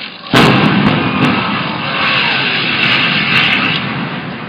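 Explosive demolition of a tower block: a sudden loud blast about a third of a second in, then the rumble of the building coming down, lasting about three and a half seconds and easing near the end.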